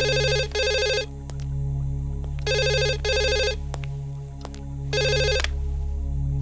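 Landline telephone ringing with an electronic double ring: short rings in pairs, the pattern repeating about every two and a half seconds, over a steady low drone.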